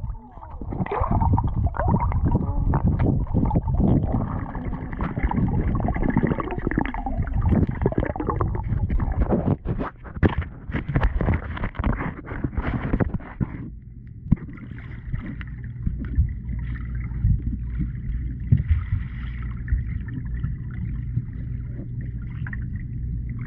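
Muffled sound of pool water heard by a camera held underwater: churning, bubbling water with many knocks and crackles from a swimmer's movements. About fourteen seconds in it settles to a quieter, steady low hum.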